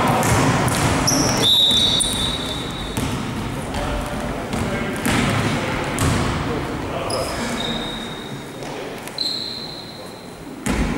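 Basketball play in an echoing sports hall: the ball bouncing on the court in irregular knocks, and sneakers squeaking on the floor in several high, drawn-out squeals, with players' voices calling out.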